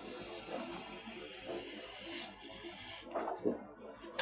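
Kangaroo leather lace being drawn through a small vise-mounted lace-cutting tool: a faint, steady dry rubbing hiss as the lace slides past the blade, stopping a little past halfway.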